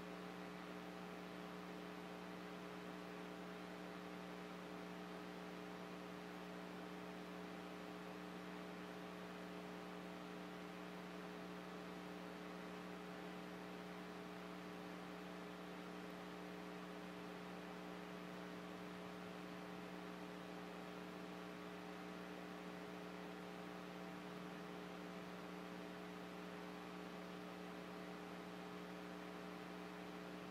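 Steady electrical mains hum: a low tone with a stack of higher overtones over a faint hiss, unchanging throughout.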